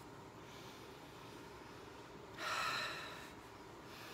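A woman taking one long sniff through her nose, about a second long, a little past halfway, smelling a scented wax sample.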